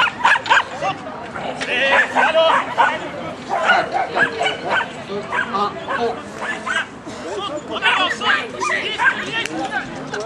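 A dog barking repeatedly in short, loud barks, with people's voices.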